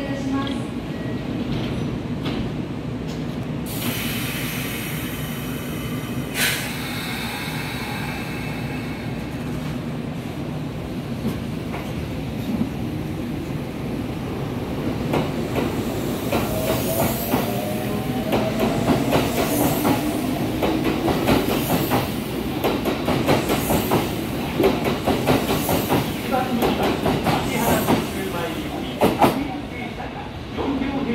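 Kintetsu 5800 series electric train pulling out of the station. A hiss comes in about four seconds in, then a rising electric motor whine as it gathers speed, with the wheels clacking over rail joints faster and louder as the cars pass, until the last car clears near the end.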